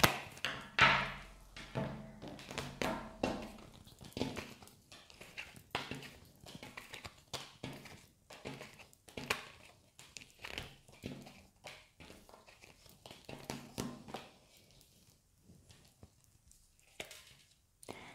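Tarot cards being dealt out one at a time onto a table: a string of irregular soft taps and slaps, loudest in the first few seconds and thinning out, with a quiet stretch of a few seconds near the end.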